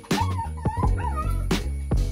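A one-month-old puppy whimpering, a few short high cries that bend up and down in pitch, over background music with a steady beat.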